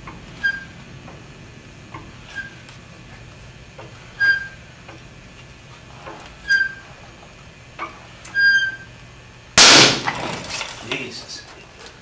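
A wooden test beam under bending load in a flexural testing machine snaps with one loud crack, like a gunshot, nearly ten seconds in. It fails at somewhere between 2,000 and 2,200 pounds of load. Before the break, short squeaks come about every two seconds as the load is raised.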